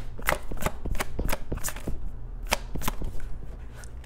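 A tarot deck being shuffled by hand: a quick run of card clicks and flicks, a short pause about two seconds in, then a few more before the shuffling stops, over a low steady hum.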